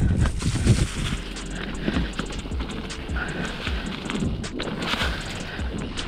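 Mountain bike rolling fast down a dirt trail strewn with dry leaves: steady tyre and leaf noise with irregular knocks and rattles of the bike over bumps, heaviest in the first second.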